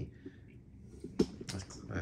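Quiet room with one sharp click a little past a second in, followed by a few faint ticks.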